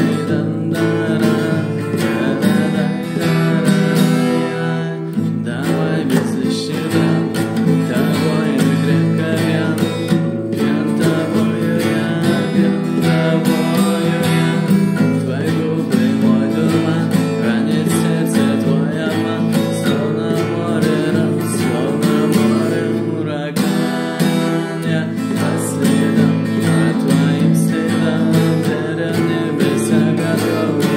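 A man singing to his own strummed acoustic guitar.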